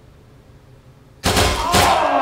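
A sudden volley of paintball guns fired together, about a second in, at once followed by several people screaming as they are hit in the feet.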